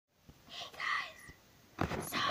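A child whispering, then starting to speak aloud near the end.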